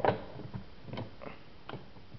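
A few sharp clicks and knocks as hands work the black case of a 1950s rotary wall telephone while trying to lift its cover off.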